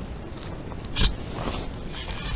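A bear nosing and mouthing the trail camera, fur and teeth against the housing: a sharp knock about a second in, then scraping and crunching.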